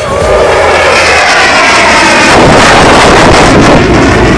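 An airplane flying low overhead: a loud rushing noise that swells over the first second, with falling tones as it passes, and stays at its loudest through the second half.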